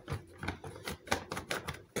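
A quick irregular run of clicks and knocks as a plastic side trim piece is worked loose by hand and slid off a car seat's base.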